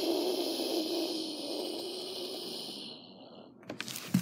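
A child's long, breathy sigh-like exhale with a faint low voice in it, fading out about three seconds in. It is followed near the end by a few sharp clicks of the phone being handled.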